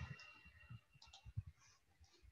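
Near silence with a few faint, scattered clicks.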